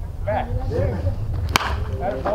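A wooden baseball bat hitting a pitched ball, one sharp crack about one and a half seconds in.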